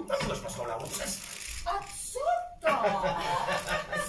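People's voices with chuckling and laughter, unworded vocal sounds rather than clear speech.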